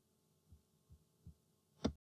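Three faint low thumps a little under half a second apart, then a louder, sharper click just before the end.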